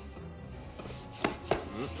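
Quiet film score with two sharp knocks, about a second and a quarter and a second and a half in, and a short closed-mouth 'mm-mm' hum near the end.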